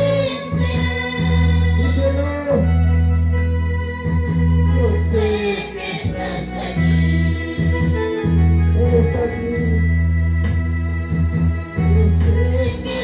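Live worship music: women singing into microphones over an electronic keyboard played with an organ sound, its long held bass chords changing every couple of seconds.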